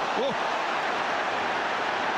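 Stadium crowd at a hurling match, a steady din, with a commentator's brief "Oh" just at the start.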